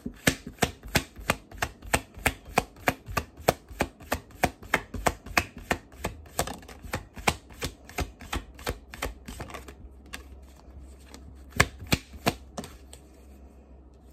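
A deck of Light Seers Tarot cards shuffled overhand by hand: a quick, steady run of crisp card slaps, about four or five a second, that slows and stops a little before the end.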